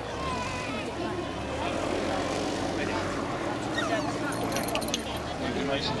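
Distant steady drone of a Hawker Hurricane's Rolls-Royce Merlin V12 engine as the aircraft flies its display, with people's voices talking over it.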